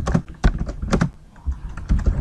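Typing on a computer keyboard: a handful of separate keystrokes with short gaps between them, the loudest about half a second and one second in.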